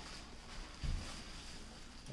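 Quiet handling of a plastic bubble-wrap sleeve around a camshaft, with one soft low thump just under a second in.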